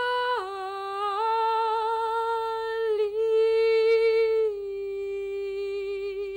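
A woman's unaccompanied voice singing slow, long-held notes with vibrato, with no instruments. The pitch steps down about half a second in, rises again near three seconds, and drops back about four and a half seconds in.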